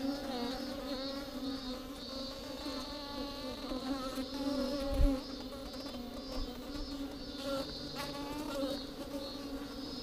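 Honeybees buzzing inside a hollow tree-trunk hive: a steady, wavering hum of many wings close to the microphone. A single low thump about halfway through.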